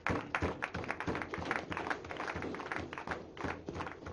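A few people clapping: quick, irregular hand claps.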